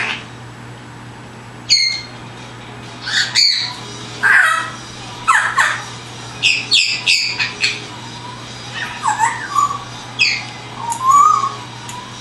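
African grey parrot giving a run of short chirps, whistles and squawks, many sweeping down in pitch, with a quick cluster of calls in the middle and a lower warbling whistle near the end. The calls are imitations of wild birds' chirps.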